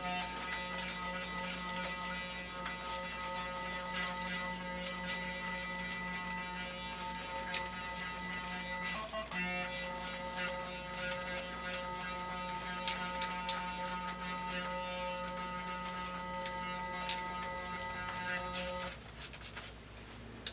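Clarisonic Mia 2 sonic facial cleansing brush humming steadily as it is worked over the face, with a brief break about nine seconds in, its cue to move to another zone of the face. It switches off near the end.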